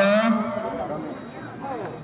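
An announcer's long-held vowel over a public-address microphone, a drawn-out last syllable of "získava" before a winner's name, ends about half a second in. Faint crowd chatter follows.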